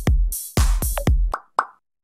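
Electronic intro music with a heavy kick-drum beat about twice a second, ending in two short bubbly pops about three-quarters of the way through, after which it cuts off.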